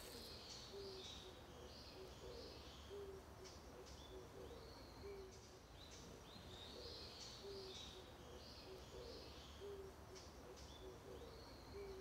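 Faint birdsong: many short, high chirps with brief low notes repeating every second or two.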